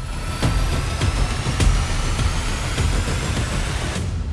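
Sound-design swell under an animated title sequence: a loud, dense noisy roar over a low rumble, with faint high tones gliding slowly upward and scattered sharp clicks.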